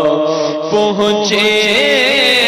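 A man singing an Urdu naat into a microphone, unaccompanied, drawing out long sustained notes; the held note moves to a new pitch about halfway through.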